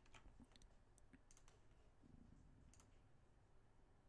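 Near silence broken by a handful of faint, scattered clicks from a computer keyboard and mouse, as on-screen windows are switched and a page is reloaded.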